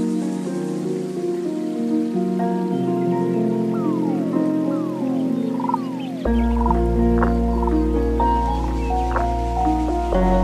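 Lofi hip hop instrumental: layered melodic notes with a few downward pitch slides. A deep bass comes in about six seconds in and the music gets louder.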